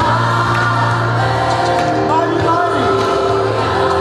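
Large gospel choir singing held chords that change every second or two, with a steady low note beneath.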